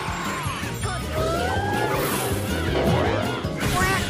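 Anime battle sound effects of an Ice Fang attack landing: a crashing impact over dramatic background music.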